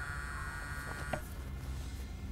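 Smartphone vibrating on a wooden table with an incoming call: a quiet, steady buzzing.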